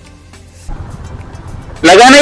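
Low road-traffic rumble that swells about two-thirds of a second in. Near the end a man's voice cuts in loudly.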